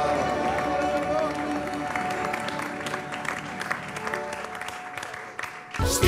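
Live band music dying away while an audience applauds, the clapping growing clearer as the music fades. Near the end, after a brief drop, a new song starts loudly.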